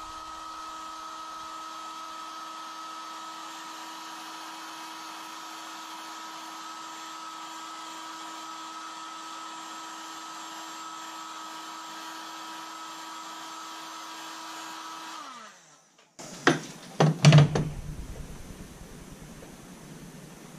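Heat 'N Strip heat gun running steadily, its fan motor giving a level hum over a rush of air, while it heats lure tape on a spoon. About fifteen seconds in it is switched off and winds down with a falling pitch, followed by a few knocks and handling clicks.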